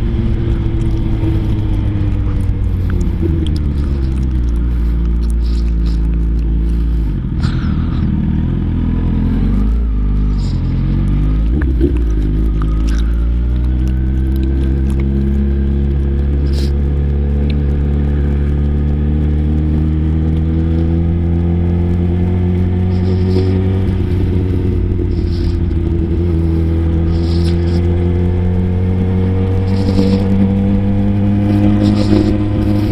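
Sport motorcycle engine heard from the rider's seat while riding in traffic. The engine note drops as the bike slows during the first ten seconds, then climbs steadily as it picks up speed again, with a brief dip near the end. Wind noise on the microphone runs underneath.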